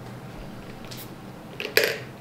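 Quiet sip of iced coffee through a straw, then near the end a single short, sharp clink of ice cubes knocking inside the glass jar.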